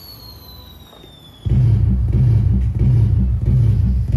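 Firework sound effects played through the loudspeaker of a pixel LED cracker-tree controller: a faint falling whistle, then, about one and a half seconds in, a sudden loud low rumble with repeated thumps.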